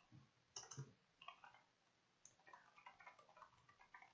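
Faint computer keyboard typing: irregular key clicks in short runs, busiest in the second half.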